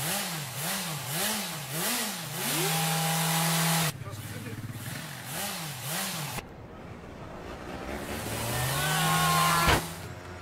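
A quad bike's small engine revved in quick repeated throttle blips, about two or three a second, then held at high revs. After a break it blips again, then climbs in one long steady rev, with a sharp knock just before the end.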